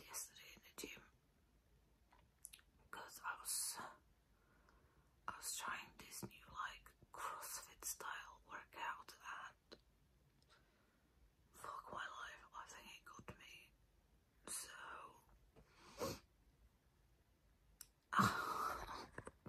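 A woman whispering quietly in short phrases with pauses between them, her voice lost for the morning.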